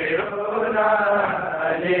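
Voices chanting a Pashto noha, a Shia lament for Ali Akbar, in a slow held melodic line. The word 'Ali' of the refrain begins right at the end.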